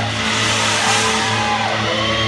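Live heavy rock band playing loudly: distorted electric guitar and bass holding a low note, with guitar notes bending up and down above it and a wash of cymbals about a second in.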